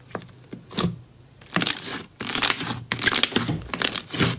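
Hands pressing and squeezing a large mound of pink slime on a layer of clear red slime, making crackling, squelching pops. A few small clicks at first, then a run of loud crackles from about a second and a half in.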